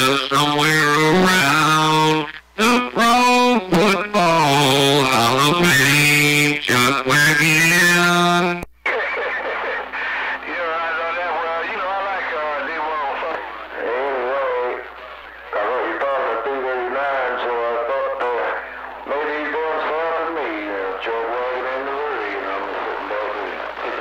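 A man's wordless, drawn-out singing on a CB radio channel, loud and full-toned for about the first eight seconds. It then cuts off suddenly, and a thinner, narrower-sounding sung voice carries on over the radio with a faint steady hum beneath it.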